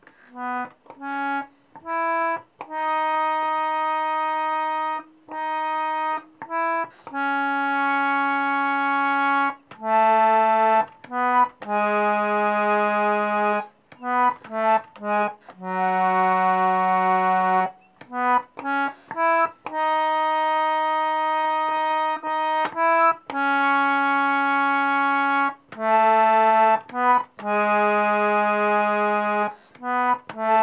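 Harmonium played one note at a time: a simple kirtan melody in raga Kafi, quick short notes alternating with long held ones, with brief breaks between phrases.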